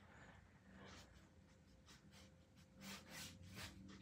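Near silence: room tone, with a few faint short rustles about three seconds in.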